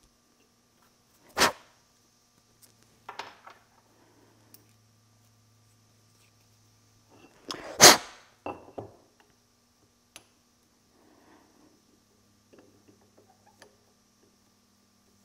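Metal clinks and knocks as a round metal plate and a small T-handle tap wrench are handled on a wooden workbench while a hole is tapped by hand. There are two sharp knocks, one about a second and a half in and a louder one near eight seconds, with a few lighter clicks between.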